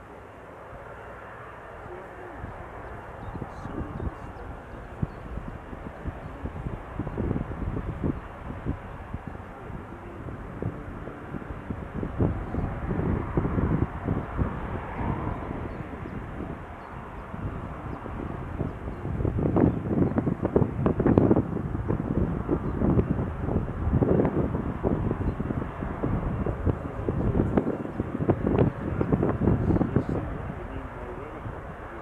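Jet airliner's engines growing steadily louder as the aircraft nears, loudest about two-thirds of the way in and staying loud, with a rough, gusty texture.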